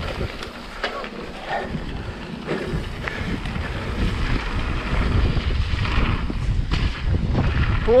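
Wind rushing over the camera microphone as a mountain bike rolls fast down a gravel trail, with scattered knocks and rattles from the tyres and bike. The wind rumble grows louder about halfway through.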